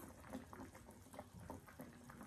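Faint, wet chewing sounds of a mouthful of hotpot food being eaten, with a few small soft clicks.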